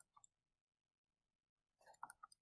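Near silence: room tone with a few faint, short clicks just after the start and again near the end.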